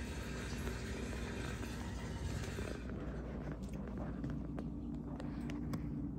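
Red squirrel gnawing a peanut in its shell: faint crunching, then a scatter of sharp little clicks from about halfway through, over a steady low room hum.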